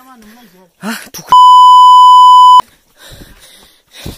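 A loud, steady single-pitch bleep, about a second and a quarter long, starts about a second and a half in and cuts off sharply. It is the kind of edited-in censor bleep laid over speech. Brief quiet voices come before it.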